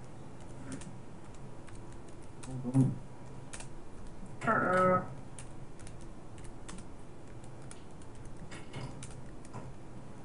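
Irregular light clicks and taps of small computer parts being handled during a desktop PC build.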